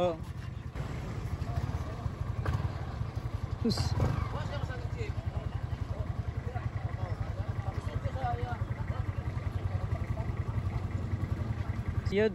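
A vehicle engine idling steadily close by, a low, even rumble.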